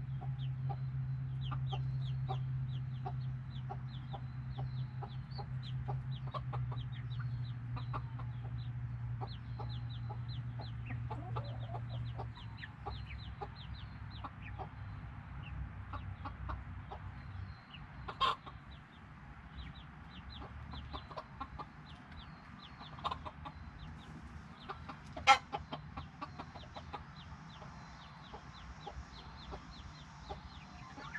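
A flock of Silkie chickens clucking and cheeping continuously in quick short calls, with two sharper, louder calls about two-thirds of the way through. A low steady hum underlies the first part and fades out before the middle.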